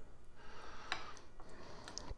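A metal spoon clicking against a bowl of chili, with one sharper click about a second in, over quiet room tone.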